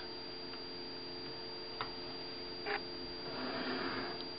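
Quiet handling of a plastic ruler and paper: one light click about two seconds in and a brief soft scrape a second later, over a steady faint hum.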